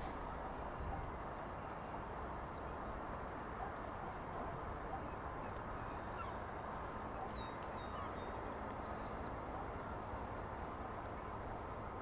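Steady outdoor background noise with no distinct event standing out.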